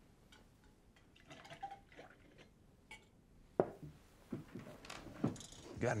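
Tin cups and dishes handled on a wooden table: scattered light clinks and knocks, the sharpest a little over halfway through.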